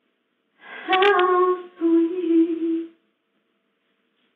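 A woman humming to herself without words: two drawn-out notes about a second each, the first wavering in pitch, the second held steady.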